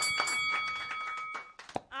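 A bell-like ding: several steady pitches ring together and fade out over about a second and a half, with a few light knocks.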